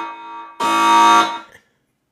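Alarm buzzer sound effect: a harsh, steady electronic buzz in short blasts. One blast dies away at the start and another comes about half a second in, lasting under a second before it stops.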